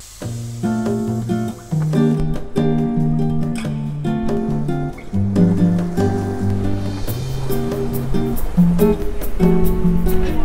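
Background music led by acoustic guitar over a moving bass line, with a light ticking beat coming in about seven seconds in.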